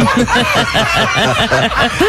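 People laughing in quick, repeated pulses, reacting to a joke just told.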